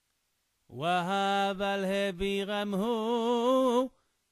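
A man's solo voice chanting a Torah verse in the Yemenite cantillation tradition. It starts about a second in, after a short silence, and mostly holds one steady note with slight wavering.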